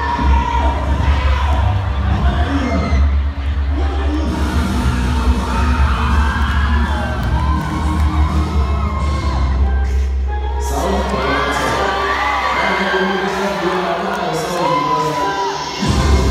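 Dance music with a heavy bass beat played over a gym's sound system, under a crowd of students shouting and cheering. The bass fades out briefly just before the end.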